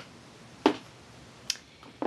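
Two short knocks about a second apart, over quiet room tone: shoes being handled and set down as one pair is swapped for another.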